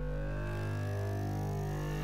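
Synthesized intro sound effect: a low steady drone under many layered electronic tones that glide slowly upward.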